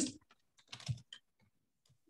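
Typing on a computer keyboard: a short run of quick keystrokes a little under a second in, then a couple of single key taps.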